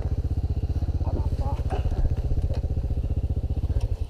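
Dirt bike's single-cylinder four-stroke engine idling with an even, rapid pulse, then cutting off abruptly at the very end.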